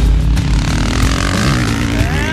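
Motocross dirt bike engine revving hard, its pitch rising and falling as the rider clears a jump, with background music.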